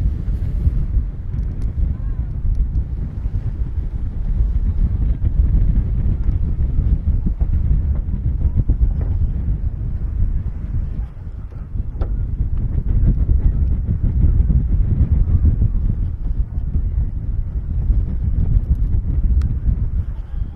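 Sea wind buffeting the microphone: a loud, gusty low rumble that eases briefly about eleven seconds in.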